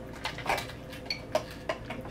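Scattered light clicks and knocks of plates, cutlery and eating at a dinner table, about five in two seconds, over a faint steady hum.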